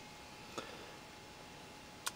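Quiet room tone with one faint, soft click about half a second in.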